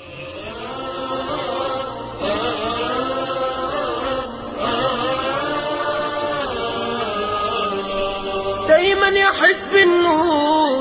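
A voice chanting in long, drawn-out melodic notes that slide slowly up and down in pitch. Near the end the melody quickens and gets louder.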